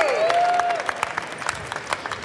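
Audience applauding, a dense steady patter of many hands clapping, with a single drawn-out voice call rising and falling over it in the first second.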